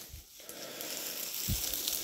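Dry, dead bracken and undergrowth rustling as they are pushed through on foot, with a single footstep thud about one and a half seconds in.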